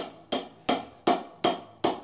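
Claw hammer tapping a ferrule knocker on a golf shaft, six sharp even taps a little under three a second, each with a short ring: knocking a small ferrule down the shaft to a set depth.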